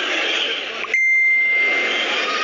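A referee's whistle blown once about a second in, a single steady high tone held for about a second, over the arena crowd's hubbub.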